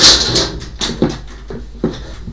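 Items being moved about on top of a wooden wardrobe: a loud rustle or scrape at the start, then a few short knocks over the next second or so.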